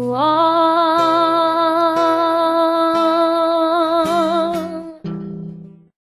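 A woman singing one long held note with vibrato over acoustic guitar, closing out a song; about five seconds in the note stops and a last guitar chord dies away to silence.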